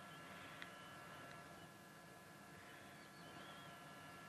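Near silence: faint outdoor bush ambience with a thin steady high tone and a couple of tiny clicks.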